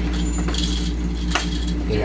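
Plastic and metal parts of a baby rocker frame being handled during assembly: light rattles and clinks, and one sharp click about a second and a half in, over a steady low hum.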